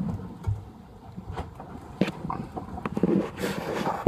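A freshly landed isaki (chicken grunt) flapping on a boat's deck: a few sharp, irregular knocks and slaps, over wind and sea noise.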